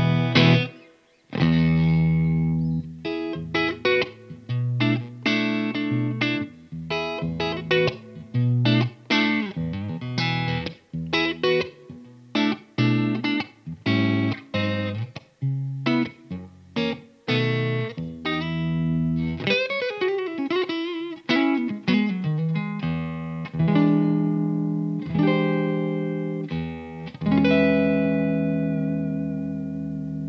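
Fender American Vintage II 1961 Stratocaster played clean through an amp on its neck pickup: a steady run of picked chords and single-note lines, with a few notes bending in pitch about two-thirds of the way through and long ringing chords near the end.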